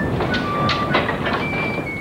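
Old cylinder printing press running, a steady mechanical clatter of knocks with a few brief high tones over it.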